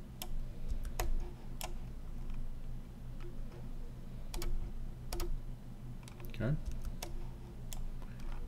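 A handful of sharp computer mouse clicks at irregular intervals, a second or more apart, over a low steady hum.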